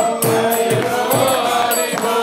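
Devotional group chanting (kirtan): several voices sing a mantra together in a steady rhythm over jingling hand percussion struck a few times a second.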